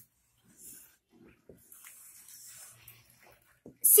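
Faint scratching of a felt-tip marker drawing circles on a whiteboard, in short strokes about half a second in and again for about a second near the middle.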